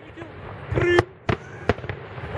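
Aerial fireworks bursting: three sharp bangs in quick succession in the second half, the first the loudest.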